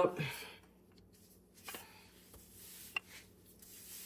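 Wooden rolling pin rolling bread dough out on a floured counter: faint soft rubbing, with a couple of light ticks, the sharpest about three seconds in.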